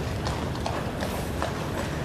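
Household Cavalry horses' hooves clopping irregularly on the road, scattered knocks over a steady background of street noise.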